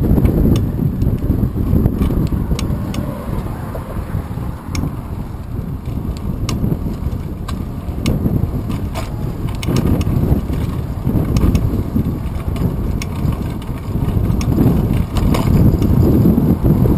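Wind buffeting the microphone of a bike-mounted GoPro Hero 2 camera while riding: a loud, uneven low rumble, with scattered light clicks and rattles from the moving bicycle and mount.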